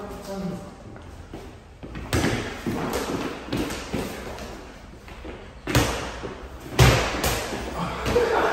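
A small basketball thumping against the floor and wall during a scrappy one-on-one game on a mini court. The thuds are irregular, with the loudest ones in the last few seconds.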